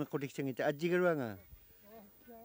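A man laughing: a run of quick voiced bursts that ends in one long laugh falling in pitch, then stops.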